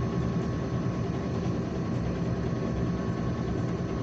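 Tractor engine idling steadily, heard from inside the cab.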